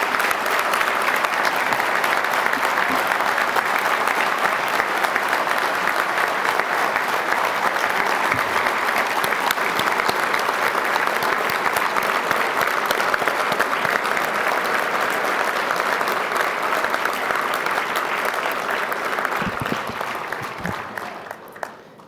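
Audience applauding at the end of a speech: dense, steady clapping that dies away near the end.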